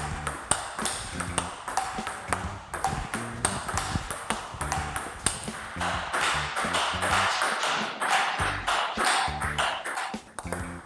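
Table tennis ball being hit in a steady run of forehand strokes: sharp repeated clicks of the ball off the bat and table. Background music with a steady beat plays underneath.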